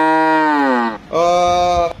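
Cow mooing twice: a long moo whose pitch rises and falls back as it ends, then a shorter, steadier moo about a second in.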